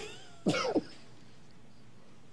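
A single short burst of a person's laughter, a squeal that falls in pitch, about half a second in.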